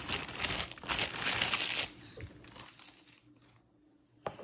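A thin clear plastic bag crinkling as it is crumpled and handled. The crinkling is dense for about the first two seconds, then thins to a few faint crackles.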